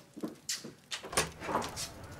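Quick footsteps followed by a wooden front door being unlatched and pulled open, a series of short knocks and clicks.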